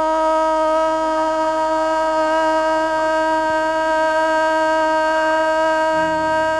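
A woman's singing voice holding one long, steady note at an unchanging pitch throughout, after scooping up into it just before.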